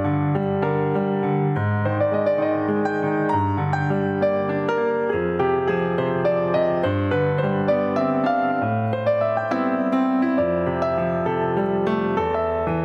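Solo piano music played live on a digital stage keyboard: low bass notes held for a second or two each, changing under a flowing melody in the right hand.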